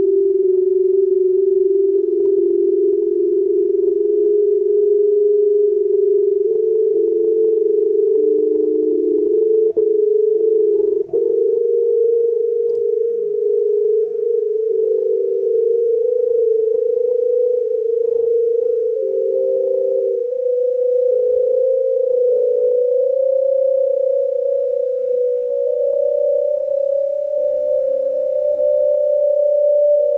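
Synthesised electronic piece: a close cluster of steady pure tones, like a sustained hum, climbing slowly in pitch in small steps, rendered from a Csound score.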